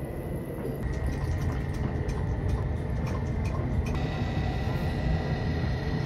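Steady laboratory fume-hood and vacuum rumble with a thin constant whine, over which liquid trickles through a vacuum filtration funnel and glassware gives a few faint clinks.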